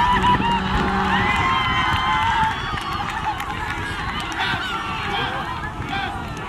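A group of players shouting and cheering together, many voices overlapping, loudest in the first couple of seconds and then dropping somewhat.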